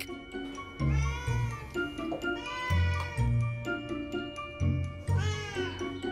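Domestic cats meowing: three separate meows, each rising and then falling in pitch, over background music.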